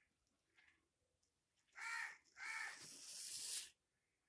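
Two harsh animal calls: a short one about two seconds in, then a longer one that cuts off shortly before the end, both louder than the voice around them.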